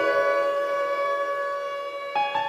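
Instrumental hip-hop beat intro: a sustained chord of several held notes, steady and slowly fading, with no vocals.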